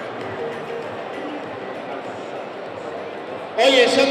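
Faint background music over a steady hubbub in the boxing hall. About three and a half seconds in, a ring announcer's amplified voice starts loudly over the microphone.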